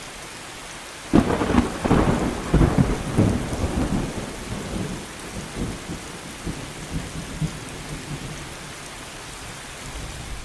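Steady rain falling on leafy trees, with a roll of thunder breaking in about a second in: a sudden loud crackling rumble that dies away over the next several seconds, leaving the rain hiss.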